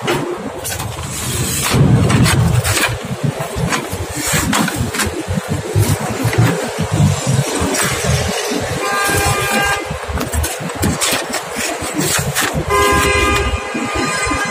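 Street traffic with a car horn sounding twice, once about nine seconds in and again near the end, each blast about a second long. Under it runs a loud rumble with knocks and rustles from the phone being handled.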